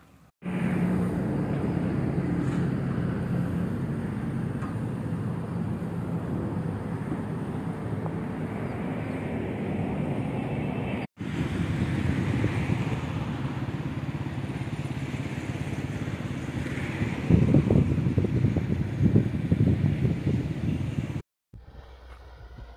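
A steady motor rumble mixed with noise, briefly cut off about midway and stopping shortly before the end; it becomes rougher and more uneven in the last few seconds.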